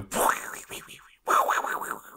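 A man imitating a synthesizer sound effect with his voice, in two bursts about a second apart, the first sweeping up in pitch.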